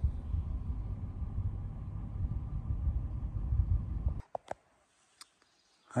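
Low, steady rumble of a vehicle driving on a dirt road, heard from inside the cabin. It cuts off abruptly about four seconds in, leaving near silence with a few faint clicks.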